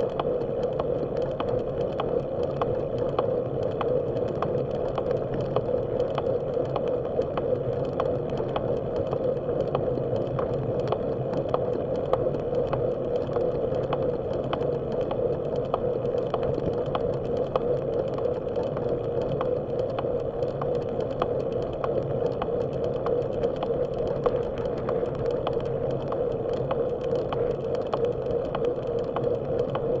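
Riding noise picked up by a bike-mounted camera rolling on a paved path: a steady rumble of tyres and wind, with a regular ticking of about two ticks a second.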